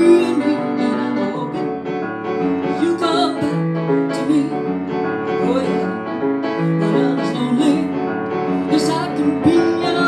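Piano playing a rock-and-roll rhythm-and-blues accompaniment, with a woman's singing voice coming in at times.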